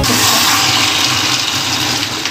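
Paneer chilli in sauce sizzling in a hot pan as a spatula turns it, a steady frying hiss.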